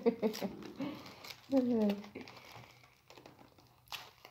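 Packing tape and wrapping crinkling and crackling in scattered bursts as a heavily taped parcel is worked open by hand, with a sharp click near the end. A short falling voice sound comes about a second and a half in.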